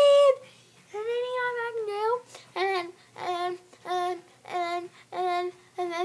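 A boy singing: a loud held note, a long note that wavers in pitch, then six short repeated notes on one lower pitch, evenly spaced.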